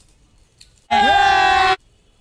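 A short, loud cry from a voice, a little under a second long, about a second in; it rises in pitch at the start, holds, then cuts off suddenly.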